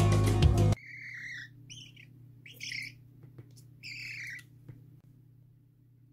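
Background music stops suddenly about a second in; then a young magpie gives four short, raspy begging calls over about three seconds, followed by a few faint clicks over a low steady hum.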